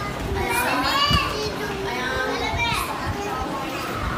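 A crowd of young children chattering and calling out over one another, with two high voices rising and falling above the rest: one from about half a second in, and one a little before three seconds in.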